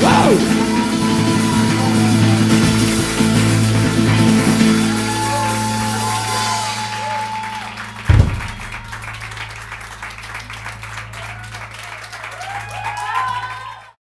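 An acoustic rock band finishes a song: the last held chord rings and fades over the first five seconds or so. A single low thump comes about eight seconds in, followed by light clapping and a few voices at the end.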